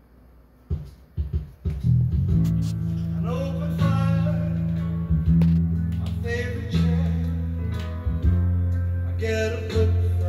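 A guitar-led song with a singing voice playing through a vintage Wurlitzer model 4002 star-shaped wall speaker. It comes in under a second in with a few plucked notes after a quiet moment, then plays on at a steady level.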